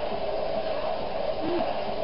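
Steady background noise with a hum in it, and one short faint voice sound about one and a half seconds in.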